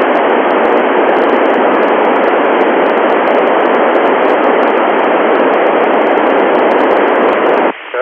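Loud, steady FM static from an Icom IC-9700 receiving the SO-50 satellite's 436.8 MHz FM downlink, with no station's voice coming through the satellite. The hiss cuts off suddenly near the end.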